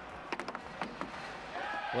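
Foosball being played: the hard ball struck and trapped by the plastic player figures on the rods, a quick run of four or five sharp clicks and knocks within the first second.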